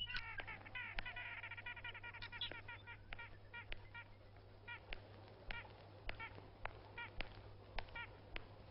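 Faint birds chirping: a quick, dense run of short chirps for the first few seconds, thinning to scattered single chirps.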